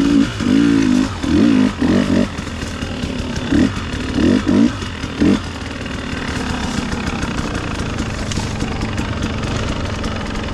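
KTM 300 XC two-stroke dirt bike engine, blipped in about eight short bursts of throttle over the first five seconds, then running steadily at lower revs while riding off.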